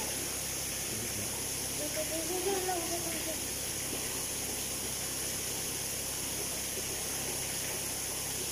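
A steady, even hiss, with a faint voice speaking briefly about two seconds in.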